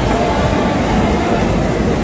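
Steady, loud rumbling noise with no clear rhythm or events.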